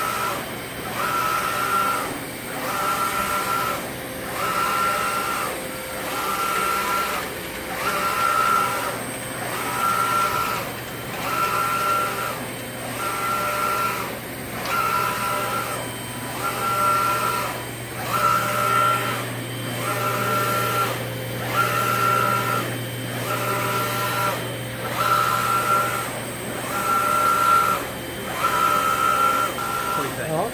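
UV flatbed inkjet printer's print-head carriage shuttling back and forth across the bed, a whirring motor tone on each pass that breaks off briefly at each turnaround, about one pass every second and a half, over a steady low hum.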